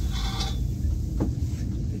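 Steady low rumble of a ropeway gondola cabin running, heard from inside the cabin, with a short higher-pitched burst near the start and a faint click a little past the middle.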